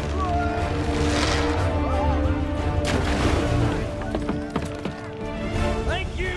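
Orchestral film score playing under action sound effects, with a sharp crash just before the three-second mark.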